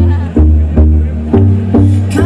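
Live band playing a dance-pop song over a festival PA: deep bass notes and keyboard chords on a steady beat.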